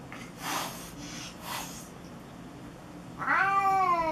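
Domestic cats facing off: two short hisses, then a drawn-out yowl starting about three seconds in that rises and then falls in pitch. It is the sound of tension between two cats.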